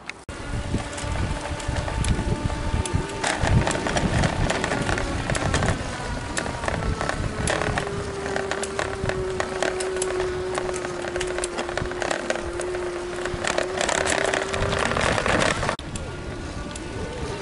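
Wind on the microphone and jolting, rattling handling noise from a camcorder carried on a moving bicycle, with many sharp knocks, and a steady hum through the middle.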